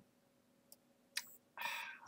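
Mostly quiet, with a few faint mouth clicks from a man about a second in, then a short breath in near the end just before he speaks again.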